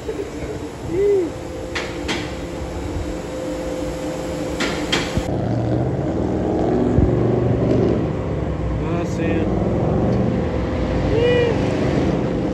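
Garage-bay background with a few sharp clicks, then, about halfway through, a steady outdoor low rumble of road traffic with wind on the microphone.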